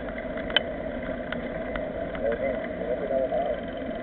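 Steady rolling noise of a mountain bike riding on asphalt, with a few sharp clicks and rattles, and faint voices of other riders about two to three seconds in.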